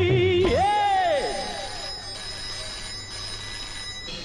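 Film song: a singer holds a long note with vibrato that ends about half a second in, then a synthesizer swoop rises and falls with trailing echoes and dies into quieter sustained high synth tones.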